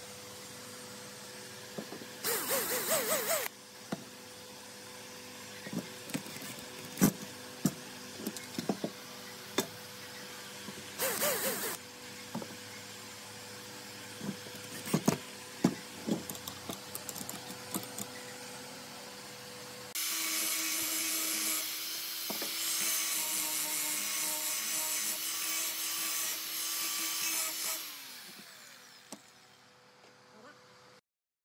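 Hand work on a wooden part: two short spells of scraping on wood and a scatter of light knocks of wood and metal. About two-thirds of the way through, a power tool starts and runs steadily for about eight seconds before fading out.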